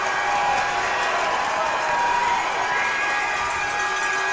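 Ice hockey arena crowd noise just after a goal: a steady murmur of the crowd with some applause and cheering, with faint steady tones underneath.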